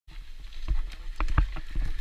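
Dirt bike ridden over a rough, rutted trail: irregular knocks and clatter as it jolts over the ruts, over a steady low rumble.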